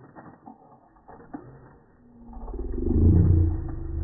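Slow-motion audio slowed to a low pitch: a few faint soft knocks, then from about halfway a loud, deep, drawn-out sound with a steady pitch that swells.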